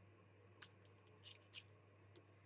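Near silence: a low steady room hum with a few faint light clicks from hands handling a clear stamp and paper cards.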